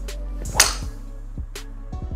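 A golf driver striking a teed ball about half a second in: a single sharp impact, the loudest sound, over background music with a steady beat.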